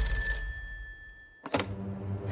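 An old rotary telephone's bell ringing out, its tones fading away. About one and a half seconds in comes a sharp click as the handset is lifted, followed by a low steady hum.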